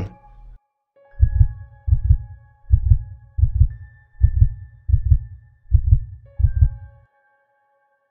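Heartbeat sound effect: about eight low double beats, a little over one a second, starting about a second in and stopping shortly before the end, over a faint held drone.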